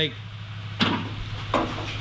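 A steady low hum with two light knocks, the first about a second in and the second about half a second later.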